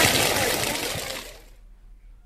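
Crackling, hissing noise of a wheat field on fire, fading out over about a second and a half into near silence.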